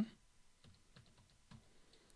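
Faint typing on a computer keyboard: a few quick, light key presses as a number is entered into a spreadsheet cell.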